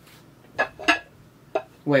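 Light clatter of dishware being handled: a few short, separate knocks.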